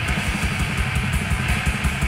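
Swedish death doom metal recording: heavily distorted electric guitars and bass over a drum kit playing quick, steady strokes, the sound dense and unbroken.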